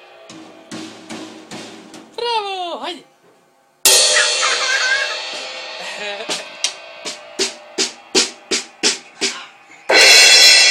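A small child playing a drum kit. First come a few light drum hits and a short voice sliding down in pitch just after two seconds. About four seconds in, a sudden cymbal crash rings out, followed by about a dozen sharp strikes at roughly three a second.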